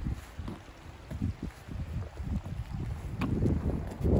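Wind buffeting the microphone in low, uneven gusts, growing stronger near the end.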